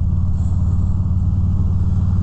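Harley-Davidson Road King's V-twin engine running steadily at cruising speed, a constant low drone with wind and road noise, heard from inside the rider's helmet.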